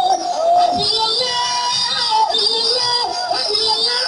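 A woman singing a devotional song, one vocal line that slides and wavers in pitch, over a steady sustained musical accompaniment.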